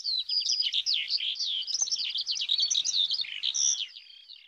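Birds chirping in a dense flurry of quick, high, overlapping notes that start abruptly.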